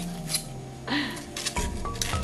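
Light background music, with a brief scratchy crunch of expanded polystyrene (EPS) foam about a second in and a few small crackles after it, as the piece cut with the hot knife is pushed free of the foam sheet.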